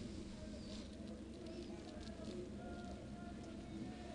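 Quiet pitch-side ambience of a football match: a low steady hum with faint distant calls.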